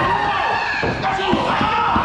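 Raised voices yelling, mixed with slams and thuds of bodies hitting the ring or ground during a backyard wrestling bout.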